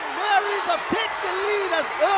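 Excited voices shouting in celebration of a goal just scored, in several short high-pitched calls that rise and fall.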